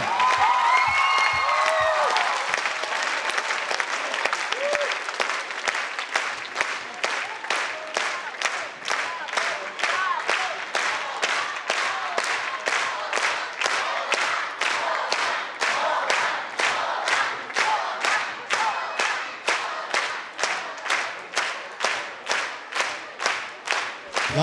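Concert audience applauding. The clapping starts as dense, scattered applause with a few shouts, then settles into rhythmic clapping in unison at about two claps a second.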